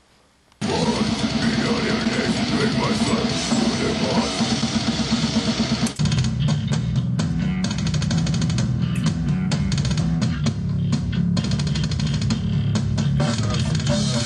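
Loud death metal music with distorted electric guitar over drums, starting abruptly about half a second in and changing sharply to a different passage about six seconds in.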